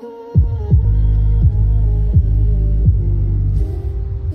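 Bass-heavy music played through a JBL Boombox 2 portable Bluetooth speaker. Deep bass notes slide down in pitch about once every three-quarters of a second over a sustained melody, and the bass drops out near the end.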